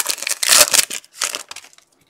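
Foil trading-card pack wrapper crinkling and tearing as it is opened by hand, in quick scratchy bursts that die away about a second and a half in.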